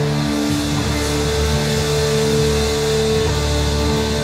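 Live rock band holding a sustained chord with no drum strokes: several notes ring steadily under a high hiss, and the highest held note drops out about three seconds in.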